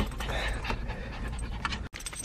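Small dog panting inside a car, over a steady low cabin rumble; the sound drops out abruptly near the end.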